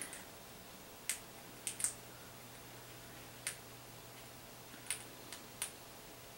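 Small sharp clicks, about seven scattered irregularly, of glass beads and a steel beading needle knocking together as the needle and thread are worked through the beadwork close to the microphone, over a faint steady hum.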